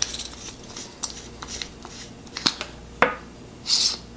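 The screw-on tail cap of a GearLight S2500 LED flashlight is unscrewed with faint scraping and small clicks. The plastic battery cartridge is then pulled from the tube, with a sharp click about two and a half seconds in, a louder click at three seconds, and a brief rasp near the end.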